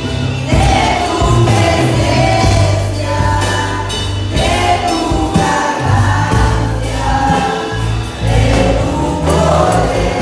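Group of singers on microphones singing a worship song together, carried by a band with keyboard and steady low bass notes underneath.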